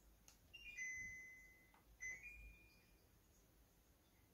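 An LG Whisen stand air conditioner playing its power-on chime: a short melody of electronic beeps. A note steps down to a held tone about a second long, then about two seconds in a second note steps up.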